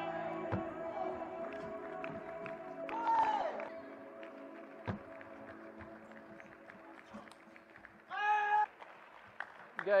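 Table tennis rally: a run of sharp clicks as the celluloid-type ball is struck by the bats and bounces on the table. Background music fades out over the first few seconds. Near the end there is a loud shout as the point ends.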